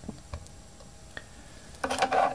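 Faint handling sounds as a yarn needle is taken off the yarn: a few soft, sparse ticks, then a brief louder rustle near the end.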